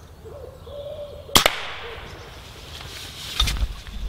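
A pigeon cooing faintly, then about a second and a half in a single sharp crack from a silenced, firearms-rated Theoben Rapid .20 air rifle firing, fading away over about a second. Near the end a low rumble sets in.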